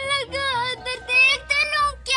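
High-pitched singing voice, a string of short held notes that bend between pitches.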